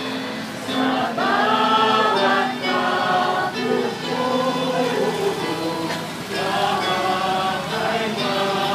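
A choir singing a hymn, several voices together in long held phrases.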